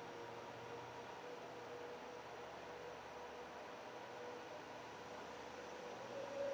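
Faint steady hiss and hum of room tone, with no distinct events, in a gap between music tracks.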